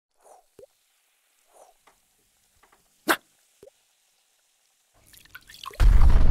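Cartoon liquid sound effects: scattered faint drips and bubble plops, with one louder plop about three seconds in. Near the end a hissing build-up rises into a loud, deep explosion-like boom.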